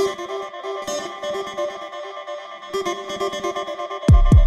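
Minimal house/techno track in a breakdown: a repeating synth melody plays with no kick drum underneath.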